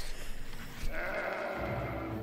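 A sheep bleating about a second in, with a steady low hum underneath in the second half.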